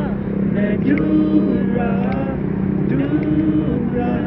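A voice singing drawn-out vowel notes in short phrases, over a steady low hum and a constant background rumble.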